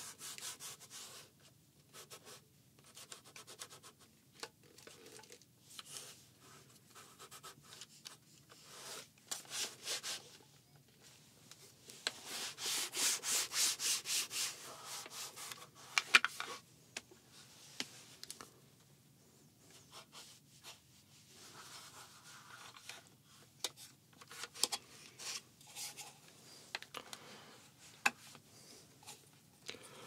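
Cloth rubbing over the plastic body of a Panasonic AVCCAM camcorder in short wiping strokes, with a louder, quicker run of scrubbing about twelve seconds in. A few sharp clicks break in, two of them louder, a little after the scrubbing and near the end.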